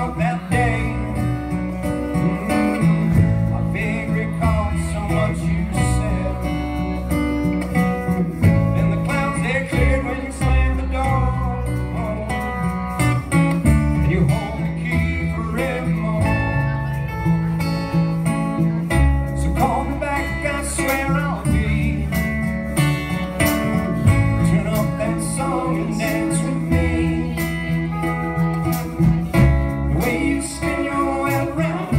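Live band playing a song on acoustic and electric guitars, drum kit and upright bass, with a man singing at times.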